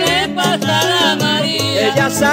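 Latin dance band recording: melodic lines over a steady percussion rhythm.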